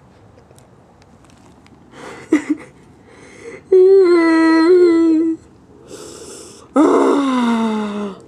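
A man moaning with no words: a long held moan about four seconds in, then a second moan that falls in pitch near the end.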